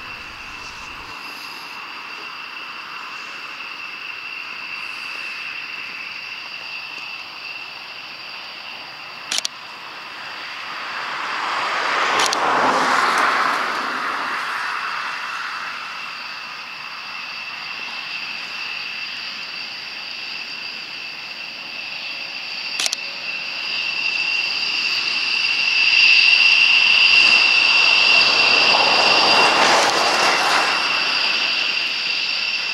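Distant jet engines of a B-1B Lancer bomber running, a steady high-pitched whine over a rushing noise. The sound swells about twelve seconds in, eases, then grows loudest near the end.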